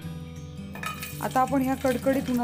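Background music, then about a second in a dried sabudana-potato chakli goes into hot oil in a metal kadhai and starts to sizzle, with a clink of metal against the pan.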